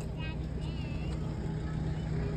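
A vehicle engine idling with a steady low hum, with faint voices in the background.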